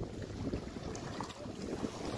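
Wind buffeting the microphone, over small lake waves lapping at the shore.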